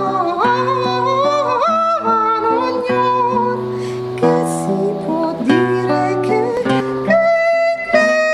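A woman singing with classical guitar accompaniment: her voice slides between notes over plucked guitar notes.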